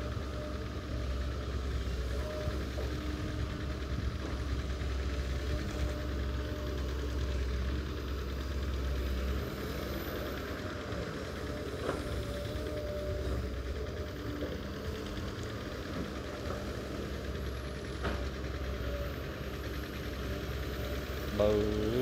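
A Sumitomo crawler excavator's diesel engine running under load as it digs and lifts wet mud, with a steady low drone that eases off about nine or ten seconds in.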